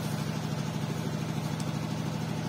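A steady low machine hum, like a motor or engine running at an even speed, with no change in pitch or level.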